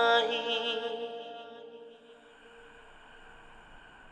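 The last held note of an unaccompanied vocal nasheed, voices only with no instruments, fading out over about two seconds into faint hiss.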